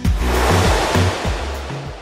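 Programme bumper music: a cymbal crash rings out and slowly fades over low bass notes, closing a drum-kit jingle.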